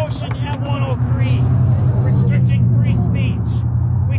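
A motor vehicle's low, steady engine hum, growing louder toward the middle and easing off near the end, with scattered voices over it.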